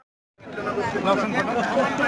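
Chatter of several people talking at once, starting after a brief moment of dead silence.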